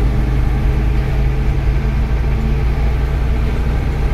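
Bus engine running with a steady low hum and road noise, heard from inside the cabin while the bus drives.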